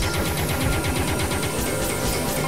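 Experimental electronic synthesizer music: a dense, noisy drone with a rapid run of clicking pulses over a few steady tones.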